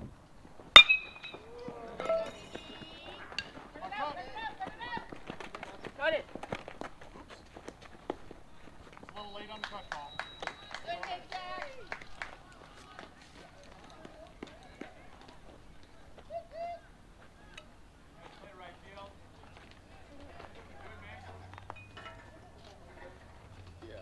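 A baseball bat hits a pitched ball about a second in: one sharp crack with a brief ring. Spectators then cheer and shout for several seconds.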